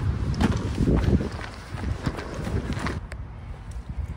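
Footsteps on a path and handling noise from a handheld camera carried at a brisk pace, over a low rumble, with faint voices.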